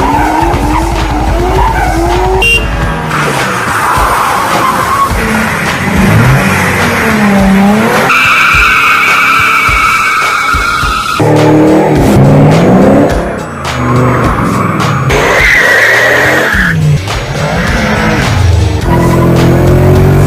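A run of cut-together car clips: engines revving up and down through gears and tyres squealing hard in drifts and a wheelspin burnout, with music underneath.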